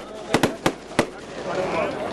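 A quick, irregular run of about five sharp cracks in the first second, over a low murmur of voices.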